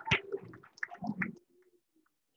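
Applause dying away: a few last scattered claps and small room noises, which thin out to near silence after about a second and a half.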